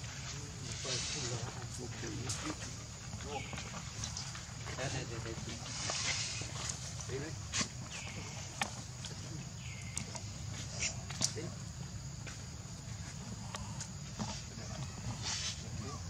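Outdoor ambience with indistinct background voices over a steady low hum. Scattered sharp clicks and a few short, high, downward-curving calls are heard about every two seconds through the first half.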